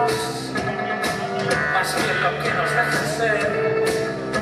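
Live rock band playing: drum kit hits in a steady beat under electric guitar and keyboards, heard from the audience in the hall.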